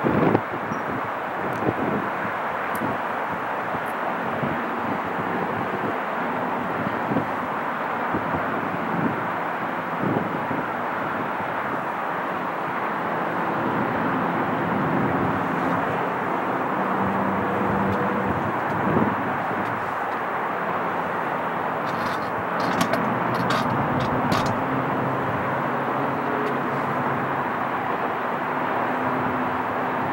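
Steady rush of distant freeway traffic from the valley below, with a low engine drone joining in about halfway through.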